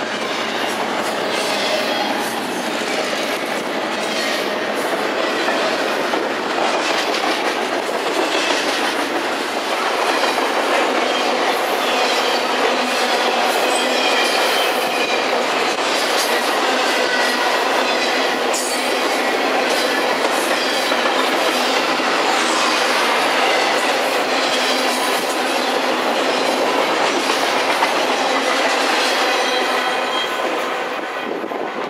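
Intermodal freight train of double-stacked container well cars and trailer flatcars passing close by at speed: a steady loud rumble and rattle of cars, with wheels clicking over rail joints and faint high wheel squeals.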